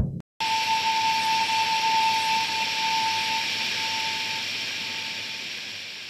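A brief thud, a moment's break, then a steady hiss with one held tone in it that gradually fades out.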